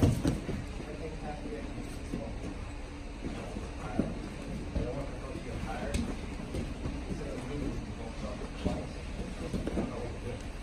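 Grappling on training mats: cotton jiu-jitsu gis rustling and bodies shifting, with a few soft thumps, at the start and about four, six and nine seconds in, over faint indistinct voices in the room.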